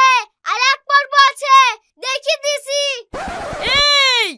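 A child's high-pitched voice speaking rapidly and emphatically in short phrases. Near the end there is a brief rushing noise, then a long cry that falls in pitch.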